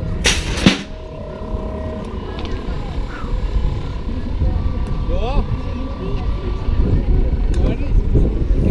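Wind buffeting a helmet-mounted action camera's microphone as a low, rough rumble, with a short loud rushing burst within the first second and faint voices behind.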